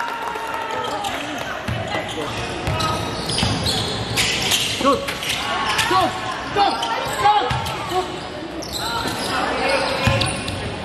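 Basketball dribbled on a hardwood gym floor during play, with players' voices and calls in the hall.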